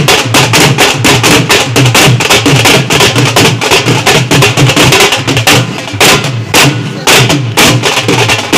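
Loud festive music with a fast, driving drum beat, which thins out briefly about six seconds in.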